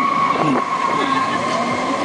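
Riders laughing and calling out on a tower ride over a steady rush of wind on the microphone, with a high, steady whistle-like tone that stops near the end.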